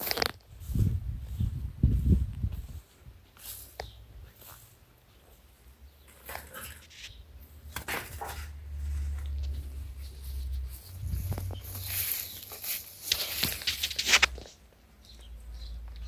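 Camera handling while walking through tall grass: scattered knocks and rustling, loudest in a spell of rustling about three-quarters of the way through, with a low rumble of wind on the microphone.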